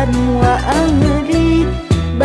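Sholawat, an Islamic devotional song in praise of the Prophet: a voice sings a wavering, ornamented melody over steady instrumental backing.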